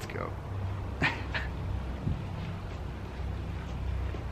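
A few short, high-pitched vocal sounds: one falling call at the start and two quick sharp ones about a second in, over a steady low hum.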